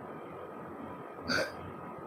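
A pause in a man's talk: steady room tone with a faint constant hum, broken once a little over a second in by a short, soft sound.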